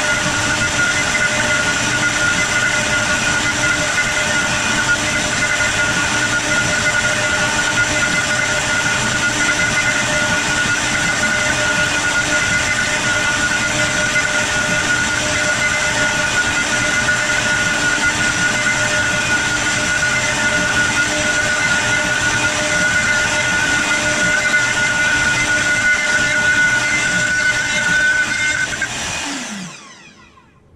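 Wood-carving CNC router's spindle running steadily with a high whine while it machines a wooden bowl blank. About a second before the end it shuts off and winds down, the pitch falling as it stops: the toolpath has finished.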